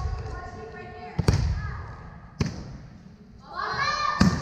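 A volleyball bounced twice on a hardwood gym floor, about a second apart, each with a ringing echo, while girls' voices call out; the voices swell into louder shouting near the end as the serve goes up.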